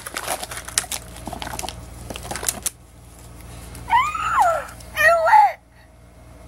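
Plastic toy packaging handled with quick clicks and crinkles, then about four seconds in a talking Angry Birds Chuck toy plays a short high-pitched voice clip in two phrases that swoop up and down in pitch.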